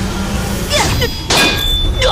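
A sharp metallic clang, the sound effect of a weapon strike in a fight, comes about a second and a half in and leaves a high ringing tone. A short swishing glide comes just before it.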